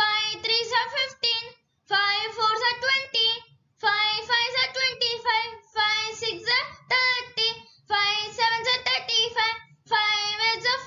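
A child chanting the five times table in a high, sing-song voice, one line about every two seconds with a short pause between lines ("five threes are fifteen" up to "five sevens are thirty-five").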